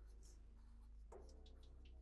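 Faint scratching of a black marker drawing short strokes on paper, several quick strokes in the second half, over a low steady hum.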